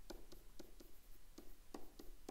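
Faint, irregular ticks and scrapes of a stylus writing by hand on a tablet surface.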